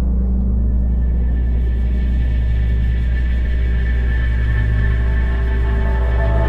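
Dark, ominous film score: a deep sustained drone with long held tones layered above it, slowly building.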